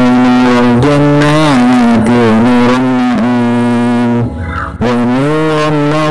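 Background music: a voice singing long held, ornamented notes over a steady low drone, with a short break about four and a half seconds in.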